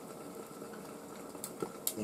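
Egg omelette with tomato sauce cooking gently in a non-stick frying pan over a gas flame, a faint steady sizzle with a couple of small crackles near the end.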